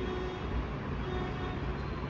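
Steady low background rumble, with no distinct event.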